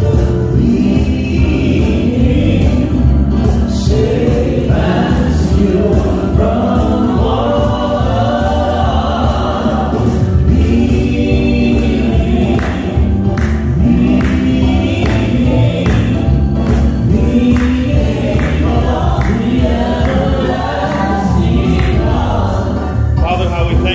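Gospel choir singing with instrumental accompaniment, loud and continuous.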